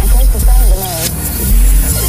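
Hip hop track playing: heavy pulsing bass and drums with a vocal line over it.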